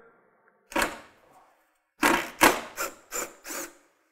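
Cordless impact driver hammering a screw out of a tailgate latch in short trigger bursts: one burst about a second in, then five quick bursts in a row.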